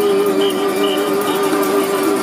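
A man singing one long held note into a microphone, with a slight waver, over strummed acoustic guitar.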